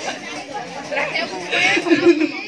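Several people talking at once: indistinct chatter with no clear words.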